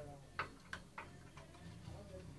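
Three or four short, sharp clicks in quick succession, about three in the first second, heard faintly over a low hum and faint murmur of voices.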